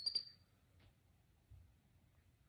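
A pet capuchin monkey gives one short, high squeak while grooming and nibbling at a man's face, followed by a few faint clicks. There is a soft low bump about one and a half seconds in.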